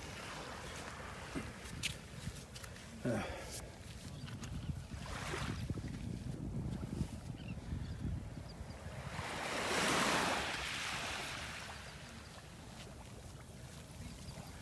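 Outdoor beach ambience: wind rumbling on the phone's microphone over the soft wash of small waves at the shoreline, with a broad swell of noise about ten seconds in.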